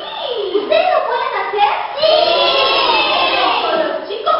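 A group of young children's voices raised together with a woman's voice, growing louder and more sustained about halfway through.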